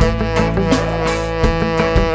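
Live reggae band playing an instrumental passage: a long held lead note over steady bass and drums, with a few drum hits along the way.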